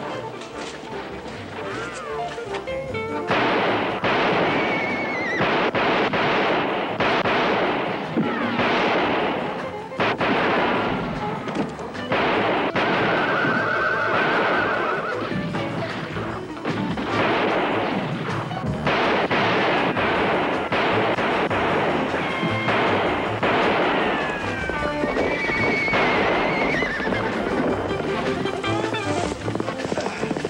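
A film score plays loudly, with horses neighing over it, once the music swells about three seconds in.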